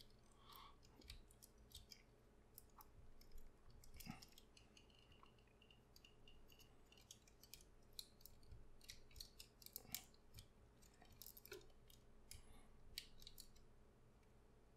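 Faint, irregular clicks and small plastic knocks from a Transformers Masterpiece MP-44 Convoy figure being moved by hand, its ratcheting backpack joint clicking as it turns.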